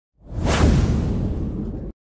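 A cinematic whoosh sound effect over a low rumble: it swells in quickly, peaks about half a second in, holds, then cuts off suddenly just before the end.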